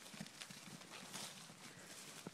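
Faint, irregular hoofbeats of a heifer and goats running over grass.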